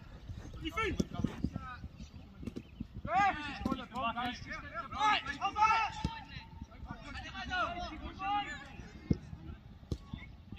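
Players and spectators at a football match shouting and calling out in raised, high-pitched voices, with a few sharp thuds of feet on the ball over the pitch noise.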